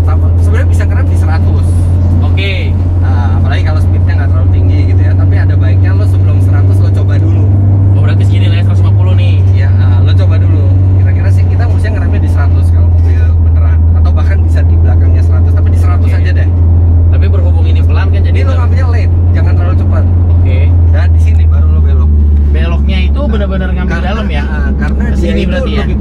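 Honda Brio heard from inside its cabin while being driven at speed on a circuit: a loud, steady low engine drone with road noise, easing off slightly near the end.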